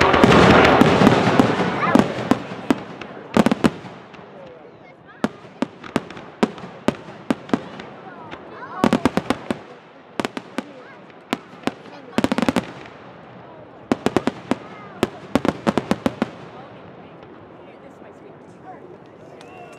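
Fireworks display: a loud dense barrage in the first two seconds, then sharp bangs and clusters of crackling reports every second or two.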